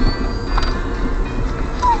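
Music playing from the car radio inside a moving car, over a steady low rumble of engine and road noise.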